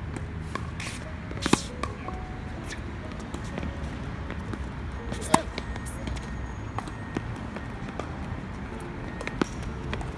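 Tennis balls struck by racquets during a rally on an outdoor hard court: two sharp pocks, about a second and a half in and just after five seconds, a fainter hit near the end, and lighter knocks in between over a steady low rumble.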